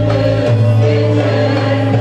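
A mixed choir of men and women singing long held notes, accompanied by a Turkish music ensemble of oud, kanun, ney and violin.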